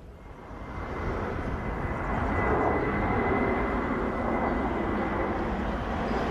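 Steady outdoor rumble that fades in over the first couple of seconds and then holds level, with a faint, steady high whine above it.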